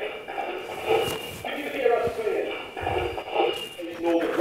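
Indistinct, muffled speech in a large hall, quieter than the clear talk either side, with shuffling handling noises and a single soft knock about two seconds in.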